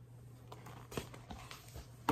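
Faint handling sounds of a hardcover picture book, a few soft taps and rustles around the middle as it is lowered from the camera, over a steady low hum.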